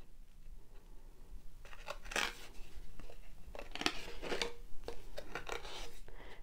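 Embroidery floss strands pulled into the slits of a cardboard disc loom: several short, scratchy rasps of thread dragging against the cardboard edges, with the cardboard handled in between.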